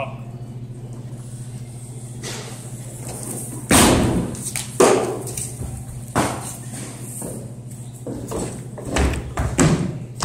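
People moving about a wooden stage among cardboard boxes: scattered thumps and knocks, about six in the second half, the loudest about four seconds in, over a steady low hum.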